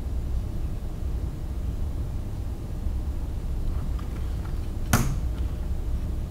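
Steady low room hum, like ventilation running, with a few faint ticks and then one sharp click near the end as hands handle the printer's wiring.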